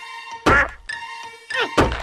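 Cartoon sound effects: two hollow thunks, the first about half a second in and the second near the end, over background music.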